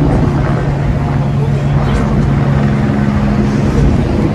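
Steady low mechanical hum holding two tones, under the general noise of a busy footbridge crowd.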